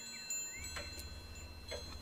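Faint ambient background score of an audio drama: sustained, ringing chime-like tones, with a low hum coming in about half a second in and a few soft ticks.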